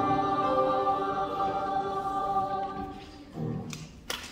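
Youth choir singing a held chord that dies away about three seconds in, followed by a short low tone near the end.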